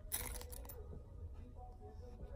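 A brief soft rustle of hands handling a small leather-and-canvas key holder, lasting about half a second near the start, over a faint low room hum.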